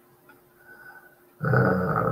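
A man's drawn-out hesitation sound, a low steady 'ummm' of nearly a second, begins about one and a half seconds in after near quiet.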